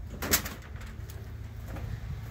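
A footstep on a wooden step about a third of a second in, over a low steady hum, with faint bird cooing.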